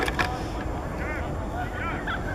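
Wind rumbling on the microphone at an outdoor rugby pitch, with short distant shouted calls from players about a second in and again near the end. Two short knocks come right at the start.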